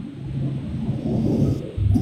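A low rumbling noise that swells and fades over about a second, ending in a dull thump near the end.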